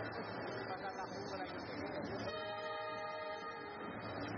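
Faint murmur of a basketball arena crowd. A little past two seconds in, a steady horn-like tone sounds for about a second and a half.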